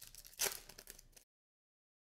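Silver foil trading-card pack wrapper being torn open and crinkled by hand, loudest about half a second in, then cutting off abruptly.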